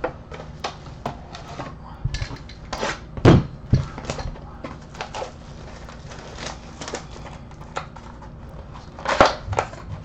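Small cardboard trading-card boxes and packs being handled on a table: scattered taps, clicks and crinkles of box and wrapping, with louder knocks about three seconds in and again near the end.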